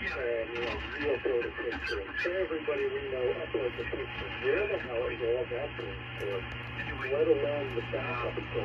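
A man's voice received on the 75-metre AM calling frequency (3.885 MHz) by a Flex-5000A and heard through its computer speakers. He talks without a break, with the radio audio cut off above about 3.5 kHz and a steady low hum underneath.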